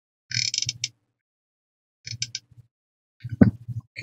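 Three short bursts of rustling and crinkling from paper and fabric being handled and pressed down, with near silence between them.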